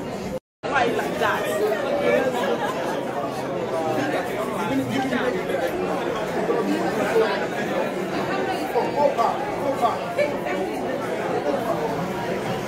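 Crowd chatter in a large hall: many voices talking at once, none standing out as a single speaker. The sound cuts out completely for a moment about half a second in.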